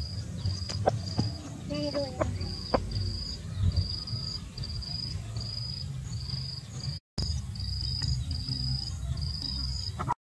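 An insect chirping in short, high, evenly spaced pulses, about two a second, over a low outdoor rumble. A few soft clicks and a short low call about two seconds in. The sound cuts out briefly about seven seconds in.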